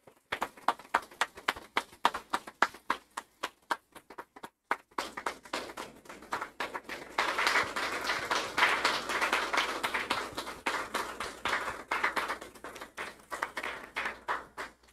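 Audience applauding by hand-clapping: thinner, fairly even claps for the first few seconds, then a brief lull, then fuller, denser applause from about five seconds in that thins out near the end.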